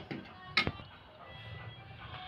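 Soft background music, with one sharp clink about half a second in from a steel ladle knocking the side of a pressure cooker while stirring thick simmering dal.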